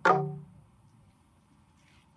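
The final short, accented note of a traditional Papua New Guinea Central Province group song, sharp at the start and dying away within about half a second. Quiet room tone follows.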